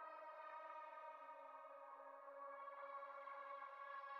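Faint sustained synthesizer pad from a drum and bass track: a drone of several steady held tones, with no drums or bass, as the track winds down at its end.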